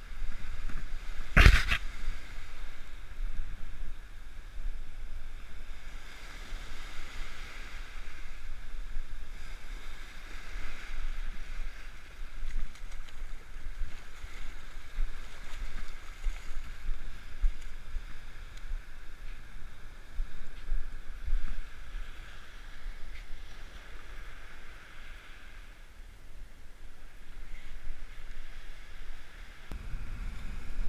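Waves washing onto a beach, under a steady rumble of wind on the microphone. A single sharp knock comes about a second and a half in.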